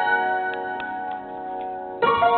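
A held piano chord ringing on and slowly fading while no new notes are played, with a few faint clicks over it.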